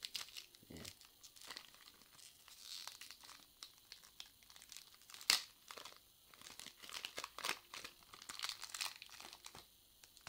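Plastic candy-bar wrapper crinkling and tearing as it is opened by hand, with irregular crackles and one sharp snap about five seconds in.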